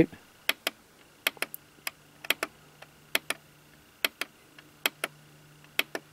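About a dozen sharp clicks at irregular intervals from pressing the switch and handling the plastic case of a hand-held power bank with a built-in LED flashlight.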